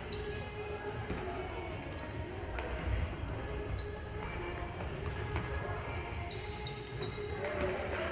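Youth basketball game on a hardwood court: a basketball bouncing as it is dribbled, and sneakers squeaking in short, high chirps as players run and cut, with voices in the background.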